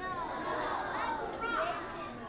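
A group of children calling out answers at once, several young voices overlapping, heard faintly across a large room.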